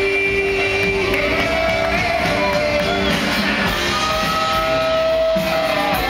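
Live rock band playing in an arena, heard from the crowd, with a singer holding long notes over guitar and drums.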